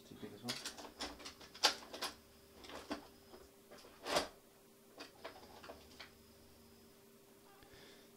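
Scattered clicks and knocks of small tools and parts being handled on a workbench, with a faint steady electrical hum underneath. The sharpest knocks come about one and a half and four seconds in, and it is quiet for the last two seconds.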